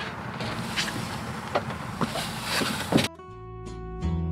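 Scattered knocks and rustles as a flexible vinyl stair tread is handled and set down onto a step. About three seconds in, these cut off abruptly and background music begins.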